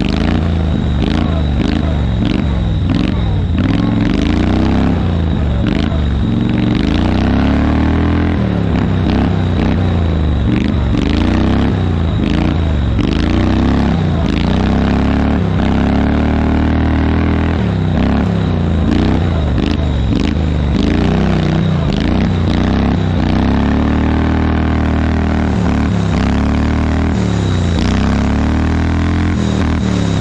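Garden tractor's small engine running under load as it is driven over a snowy trail, its pitch rising and falling again and again with the throttle, amid frequent rattles and knocks from the tractor's body over the bumps.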